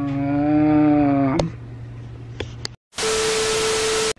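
A man's voice holds one drawn-out note for about a second and a half. After a short moment of dead silence comes a loud burst of TV-static hiss with a steady beep tone through it, about a second long: a static-glitch transition effect.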